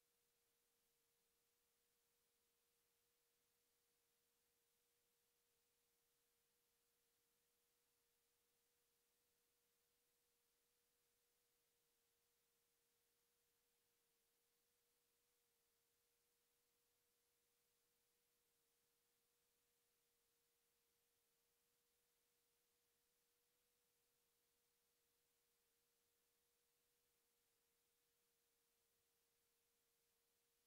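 Near silence: the stream's audio is all but muted, leaving only a very faint, steady single tone.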